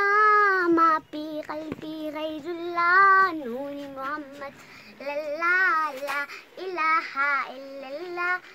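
A young girl singing solo and unaccompanied, in long held notes with a wavering pitch, broken by short pauses between phrases.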